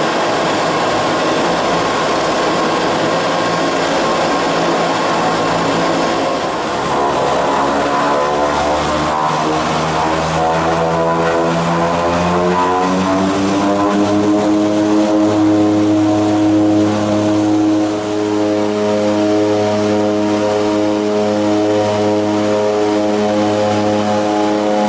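De Havilland Canada Twin Otter floatplane's twin turboprop engines and propellers heard from the cabin, rising in pitch through the middle as power comes up and then holding steady. A thin high whine joins in during the latter part, during a run across the water with spray thrown off the float.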